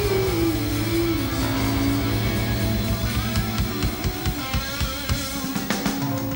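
Live rock band: a woman's held sung note slides down over bass, guitar and drums, and the drums grow busier about halfway through.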